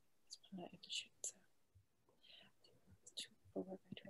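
Faint, low speech, close to a whisper, in short broken phrases.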